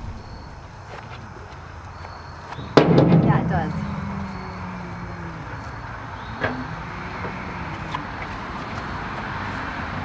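A dump trailer's metal rear barn door is swung shut and closes with a loud bang about three seconds in that rings briefly. A lighter metal knock follows a few seconds later.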